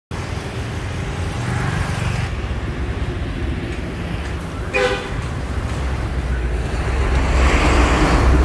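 Steady rumble of road traffic, with a short vehicle horn toot about five seconds in; the traffic grows a little louder near the end.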